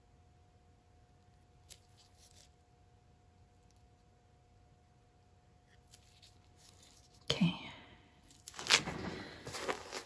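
Quiet room with a faint steady electrical hum and a few faint light taps while paint is teased on a tile with a wooden skewer. Near the end there is a short vocal sound, then louder rustling and knocking as the gloved hands and tools are handled.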